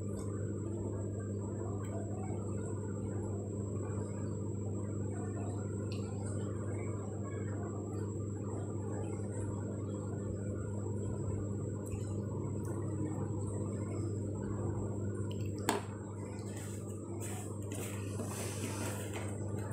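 A steady low hum with a thin, faint high-pitched whine above it, unchanged throughout. A single sharp click about two seconds before the end.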